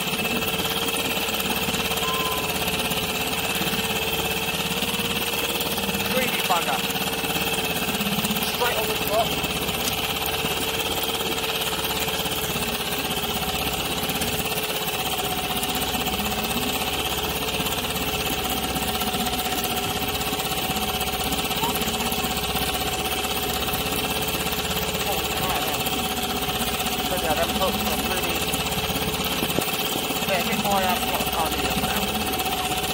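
Small outboard motor idling steadily.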